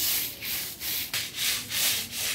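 Stiff stick broom scrubbing back and forth over a wet cement roof surface in repeated scratchy strokes, about two a second. This is the brushing stage of cement ghotia waterproofing, working sprinkled cement into the wet surface.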